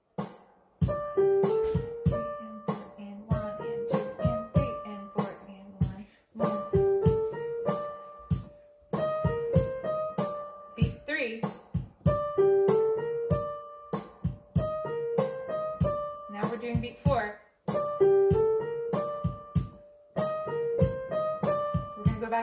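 Digital keyboard played with an electric-piano sound: a short single-note melody in phrases that repeat every few seconds, the same rhythm played with different notes. Under it runs a steady click at about two beats a second.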